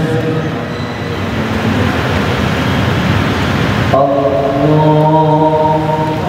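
A mosque congregation answering the imam in unison with a long, drawn-out "aamiin", heard as a dense wash of many voices. About four seconds in, the imam's chanted Quran recitation resumes as one sustained voice.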